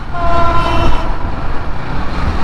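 A train horn sounding once, a steady multi-note blast of about a second, over the wind and engine noise of a moving motorcycle.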